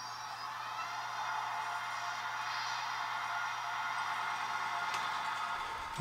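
Märklin H0 model diesel locomotive running slowly on C-track, its motor and wheels giving a steady whirring hum with a faint rising whine in the first second.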